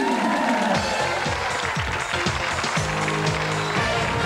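Studio audience applauding over upbeat game-show walk-on music.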